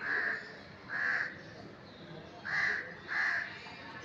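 A crow cawing four times: short, harsh calls about a second apart, with two close together in the second half.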